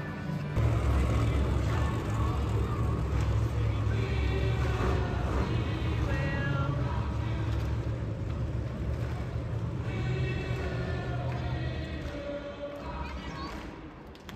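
Loud arena PA sound, music and an announcer's voice, over the deep rumble of monster truck engines as the trucks drive around the dirt track. The rumble swells in about half a second in and eases off near the end.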